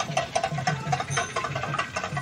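Festival music carried by fast, even drum strokes, about six a second, with a repeating pitched figure over them.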